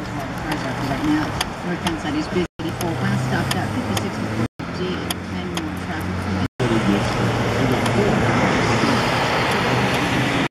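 A steady low engine hum with indistinct radio talk over it. About seven seconds in, a louder rush of road traffic joins. The sound drops out briefly three times.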